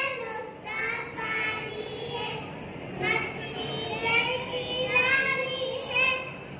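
A group of young children chanting a rhyme in unison through stage microphones, in long drawn-out phrases that swell and fall.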